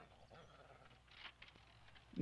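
Near silence: a faint low hum, with a brief faint sound about a second in.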